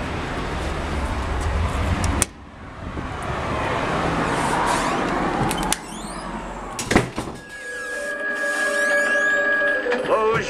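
Street traffic noise for about two seconds, cut off abruptly, then a swelling rush of noise that cuts off again, a sharp knock about seven seconds in, and from about seven and a half seconds a steady music drone of held notes.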